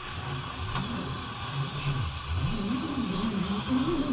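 Retractable central-vacuum hose being drawn back into the wall pipe through the inlet valve by the system's suction, a low droning whir that rises and falls in pitch as the hose feeds in.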